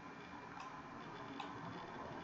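Two faint computer mouse clicks, about 0.6 s and 1.4 s in, over quiet room tone.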